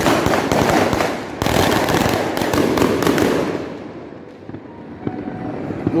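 Fireworks going off: a dense run of overlapping bangs and crackles for about three and a half seconds that then fades away, with a few scattered pops near the end.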